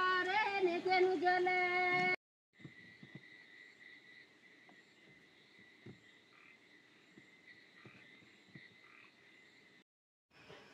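Singing voices holding long, wavering notes for about the first two seconds, then an abrupt cut to a faint, steady, high-pitched trill of a night chorus, with a few soft clicks.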